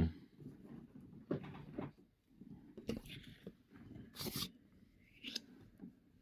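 Faint handling of paper scratchcards on a wooden table: a few short rustles and scrapes as one card is set aside and the next one is laid down.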